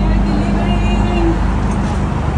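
Steady low rumble of road traffic with a constant hum, and faint voices over it.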